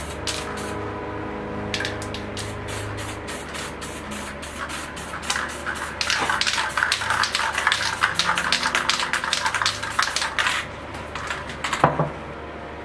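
Aerosol spray paint can sprayed in many short hisses. They come sparse at first, then thick and fast from about five seconds in until near ten and a half, over steady background music. A sharp knock comes just before the end.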